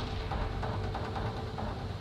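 Anime soundtrack audio under a magic effect on screen: a steady low rumble with a faint held tone above it, no voices.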